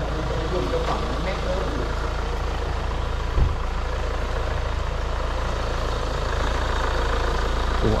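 Hyundai Tucson's four-cylinder turbodiesel running at idle as the SUV creeps forward with its bonnet up, a steady low drone that grows slightly louder toward the end. There is a brief low thump about three and a half seconds in.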